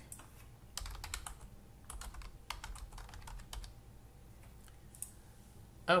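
Typing on a computer keyboard: a quick run of key clicks for about three seconds, then it stops.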